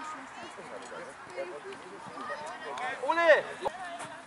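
Faint shouts and calls of voices across an open football pitch, then a loud shout of "Ohne!" about three seconds in, the football call telling a teammate that no opponent is on him.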